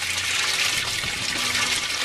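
Water pouring steadily from PVC drain pipes and splashing into the fish-tank water below: the bell siphon has kicked in and is draining the grow bed at full flow.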